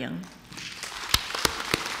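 A roomful of people applauding, starting about half a second in, with several louder single claps standing out.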